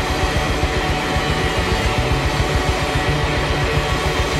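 Loud live rock music from a full band: electric guitars over a fast, pounding drum beat.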